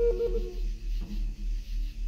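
Meditative ambient music: a wooden flute plays a short run of stepping notes in the first half-second, then pauses. Underneath is a low steady hum whose loudness pulses evenly, with a faint high hiss of cicadas.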